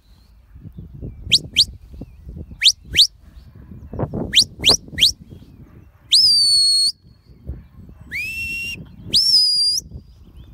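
Shepherd's whistle commands to a working sheepdog: seven short, sharply rising chirps in quick pairs and a triplet over the first five seconds, then three longer whistles, each sweeping up and holding a steady note, the middle one lower. Low background noise runs underneath.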